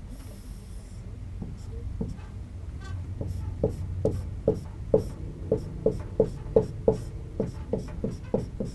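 A pen drawing on an interactive whiteboard: a few smooth strokes at first, then from about three seconds in a quick, even run of short taps, two or three a second, as small tick marks are drawn along a meter scale.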